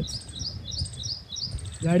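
A small bird chirping steadily, short high chirps about four a second, over a low rumble; a man's voice starts near the end.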